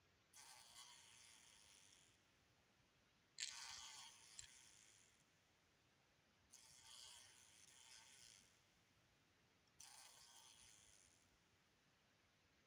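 Metallic blue blowfly caught in a spider web, buzzing its wings in four separate faint bursts of a second or two each as it struggles against the silk.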